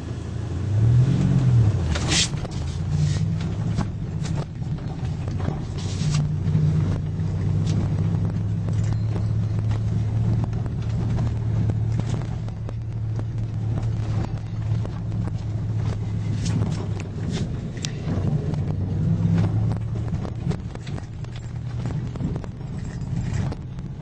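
The 1998 Dodge Ram 2500's 8-litre Magnum V10 running on the move, without much of a roar. Its pitch rises and falls about a second in, then holds steady. Sharp knocks and rattles come now and then as the truck rides.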